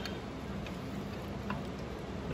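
A few light clicks of plastic and metal as a draw handle is worked on the stainless pivot pin of a Taylor C712 soft-serve freezer door, the clearest click near the end.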